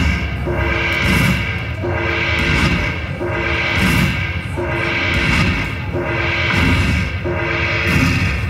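Happy & Prosperous Dragon Link slot machine playing its bonus-tally sound as coin values are added to the win meter: the same short musical phrase with a rushing swell and a low thud, repeating about every second and a third.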